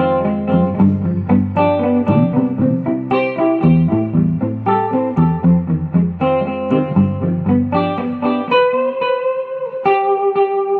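Electric guitar played clean through a Strymon Deco tape-saturation and delay pedal, set for a longer delay with light saturation, into an amp with a little reverb. A steady run of picked notes goes over low notes, then about eight and a half seconds in the low notes stop and a single held note rings out.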